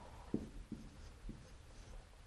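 Dry-erase marker writing on a whiteboard: a few short, faint strokes as the letters are drawn.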